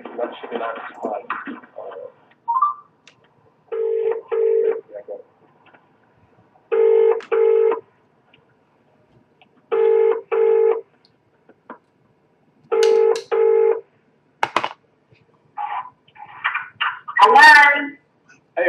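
British telephone ringback tone on a recorded phone call: four double rings about three seconds apart while the call rings out, with garbled voices at the start and a voice coming on near the end as it is answered.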